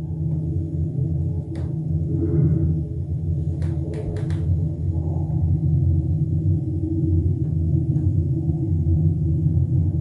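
Steady, muffled low rumble of room noise, with a few faint clicks about one and a half seconds in and again around four seconds in.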